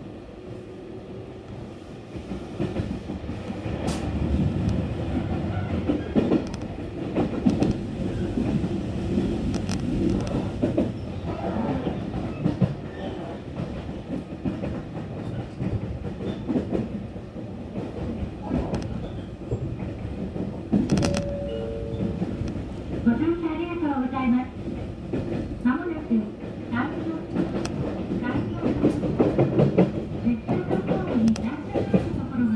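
Running noise heard inside a Kashii Line commuter train (a BEC819 battery electric unit) moving at speed: a steady rumble of wheels on rail that grows louder in the first few seconds, with scattered clicks from the track. Faint voices of people talking come in near the end.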